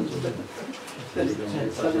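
Speech: an announcer's voice in a small room, with a quieter pause of about a second near the start before the talk resumes.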